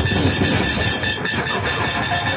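Live improvised noise music played on electronic gear: a dense, continuous clattering texture with heavy low rumble and a faint steady high tone.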